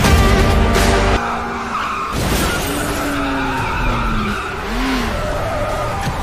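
Trailer music mixed with car-chase sound effects: car engines and tyres skidding and squealing. The loud opening bed drops back about a second in, a sudden hit comes about two seconds in, and a long sliding squeal follows.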